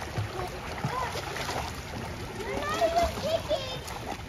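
Pool water splashing as children swim, with children's high-pitched voices calling out in the second half.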